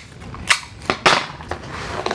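Hands handling a clear plastic container and its lid, giving several sharp plastic clicks and crackles.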